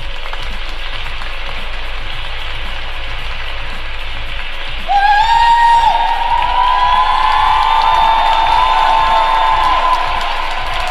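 Applause over background music. About five seconds in the music grows louder, with a held melody coming in.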